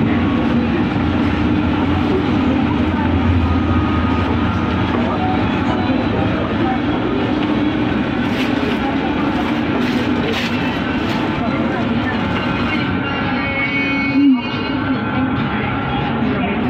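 Shopping-mall ambience: a steady hum with indistinct voices and faint background music. A few light clicks come in the middle, and a brief thump near the end.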